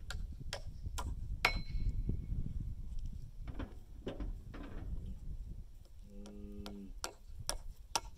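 Hammer blows on a metal nail, several sharp knocks about half a second apart near the start, one of them ringing briefly, then fainter knocks. About six seconds in a cow moos once for just under a second, with a low rumble underneath throughout.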